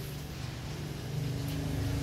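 A steady low engine hum, a motor running, growing a little louder about a second in.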